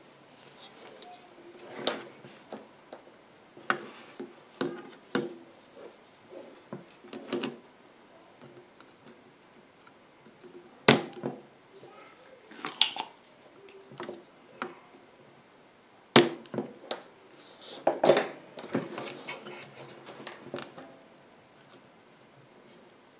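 Desoldering on a circuit board: a spring-loaded solder sucker fires with a sharp snap twice, near the middle and again about five seconds later, amid light clicks and knocks of the board and tools being handled.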